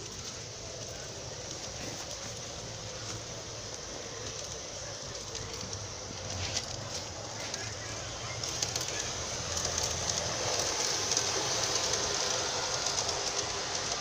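G-scale model diesel locomotive running on track, a steady motor hum with wheels rolling on the rails. It grows louder over the last several seconds as the train comes closer.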